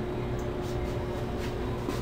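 Lit gas stove burner running with a steady low rumble, under a faint constant hum.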